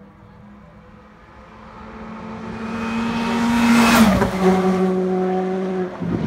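Skoda Fabia Rally2 Evo rally car's 1.6-litre turbocharged four-cylinder engine held flat out at a steady full-throttle note. It grows louder as the car approaches, passes close by about four seconds in with a sudden drop in pitch, and runs on as it moves away.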